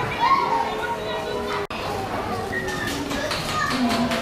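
Children's voices and play chatter echoing in a large indoor play area. The sound cuts out for an instant a little before halfway.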